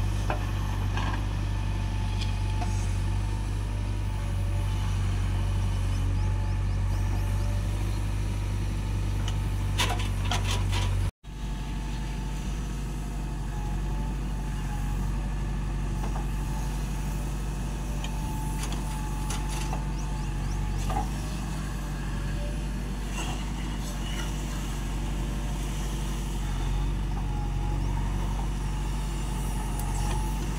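JCB backhoe loader's diesel engine running steadily as it works, with a thin steady whine over the low drone. The sound drops out for a moment about eleven seconds in.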